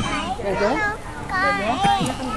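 Children talking in high-pitched voices, several short phrases with rising and falling pitch.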